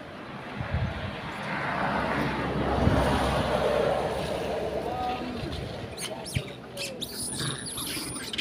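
A car passes on the road, its engine and tyre noise rising and fading away, loudest about three seconds in. Short high-pitched chirps and clicks follow near the end.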